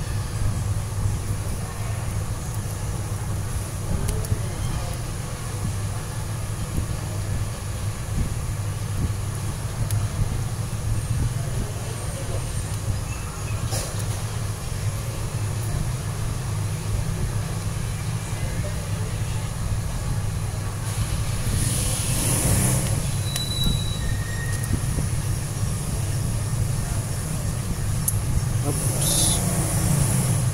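A steady low rumble of background noise, with two brief hissy rushes, the first about two-thirds of the way through and the second near the end.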